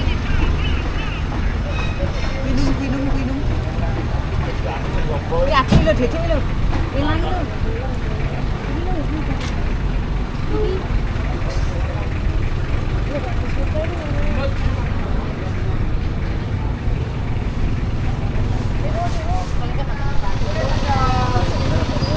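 Busy market ambience: a steady low engine rumble of vehicles with scattered voices of people talking, and a single sharp click about six seconds in.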